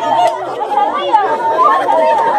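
A group of people's voices chattering and singing high and overlapping, with a flute melody running through them.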